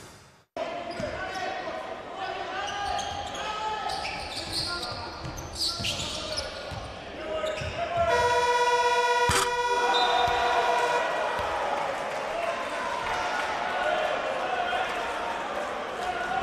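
Basketball bouncing in an arena, with players' and spectators' voices. About eight seconds in, the end-of-half buzzer sounds one loud, steady horn tone for about three seconds, with a sharp knock partway through it, as the half-court shot beats the halftime clock.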